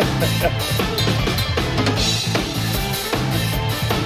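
Drum cover: a full drum kit played fast and busily, with kick, snare and cymbal hits, over a recorded rock backing track with a steady bass line.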